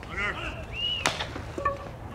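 A sharp pop about a second in as the pitched baseball arrives at the plate, with a second, louder knock about half a second later. Voices call out from the field or stands before it.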